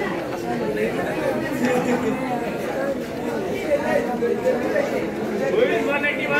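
Speech only: a boy reciting aloud over the chatter of other children.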